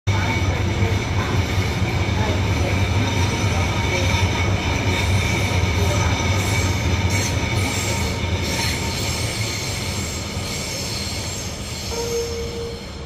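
A train close by: a steady low hum with several steady high-pitched whining tones over it, getting a little quieter over the last few seconds.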